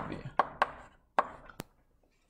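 Chalk tapping on a blackboard while letters are written: four sharp, separate taps in an otherwise quiet room.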